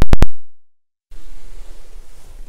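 Two or three sharp, very loud clicks in quick succession at the start, then a short stretch of dead silence. After that comes a faint, steady hiss of cabin room noise.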